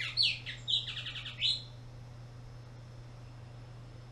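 Bullock's oriole singing one short phrase in the first second and a half: a few slurred whistles followed by a quick run of clipped notes.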